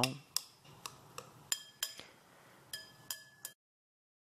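Chopsticks tapping and clinking against a ceramic bowl while crushing soaked dried scallops: about eight light clicks, several ringing briefly. The sound cuts off abruptly about three and a half seconds in.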